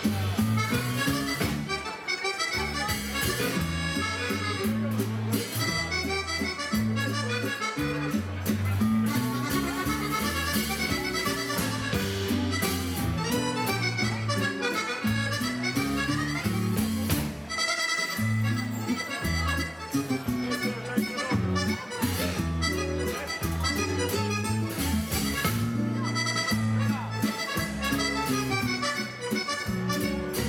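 Live dance band playing an instrumental passage: fast accordion runs lead over bass, drums and keyboards with a steady beat.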